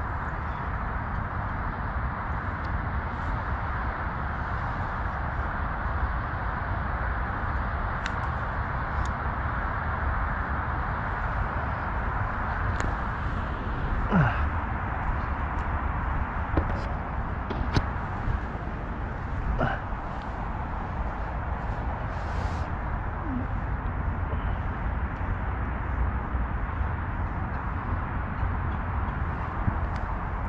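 Steady low rumbling background noise picked up by a head-mounted action camera's microphone outdoors. A few faint short sounds break through, around the middle.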